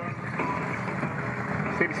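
Distant monster truck engine running at a steady level as the truck creeps over a row of cars.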